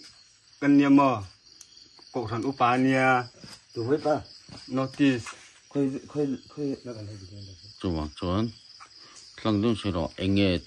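High, steady trilling of night insects throughout, heard under a man talking in short phrases.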